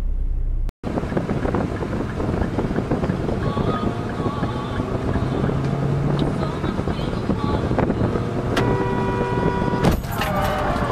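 Road and wind noise in a car's cabin at highway speed, after a short low rumble from a truck's cab that cuts off under a second in. Near the end a car horn sounds steadily for about a second and a half as another car swerves in close.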